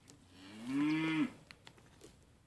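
A goat bleating once: a single call of about a second, rising slightly and then dropping as it ends, followed by a few small clicks.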